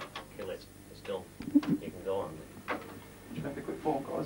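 Indistinct voices talking in a small room, with a few small knocks in between.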